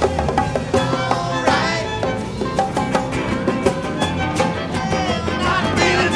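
Live band playing a steady mid-tempo rock groove on drum kit and guitars, with a violin line winding over it.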